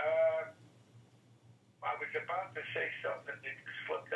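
Men talking over a telephone line, the sound thin and cut off at the top: one short drawn-out word at the start, a pause, then continuous talk from about two seconds in.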